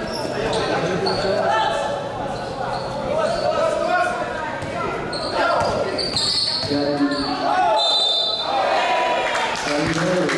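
Basketball bouncing on a hard court in a large, echoing gym, under steady shouting and chatter from players and spectators, with a few short high squeaks.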